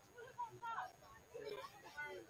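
Faint, distant voices at an outdoor soccer match: short calls and shouts from people on or around the field, a few louder than the rest.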